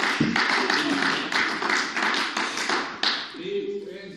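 A group of people clapping in applause, dying away after about three seconds, with a voice faintly heard as it fades.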